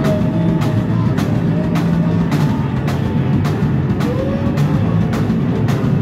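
Live rock trio of electric guitar, bass guitar and drum kit playing loud, recorded lo-fi close to the stage: heavy bass under a steady drum beat, with a held guitar note that bends upward about four seconds in. No vocals.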